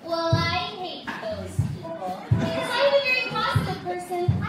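Stage singing from a musical-theatre number: voices holding and bending sung notes over a band, with a steady low drum beat.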